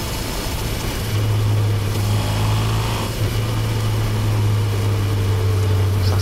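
Honda CB1000R's inline-four engine and exhaust running steadily under way inside a road tunnel. The engine note grows louder about a second in and then holds steady.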